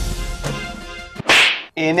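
Background music fades out, then a short, sharp whoosh sound effect comes about a second and a half in.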